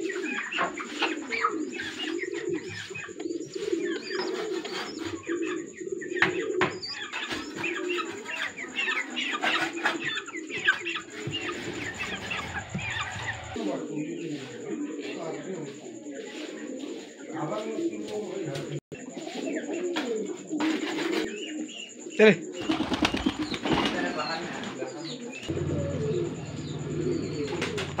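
Domestic fancy pigeons (masakali and siraji) cooing continuously, with many short high chirps mixed in.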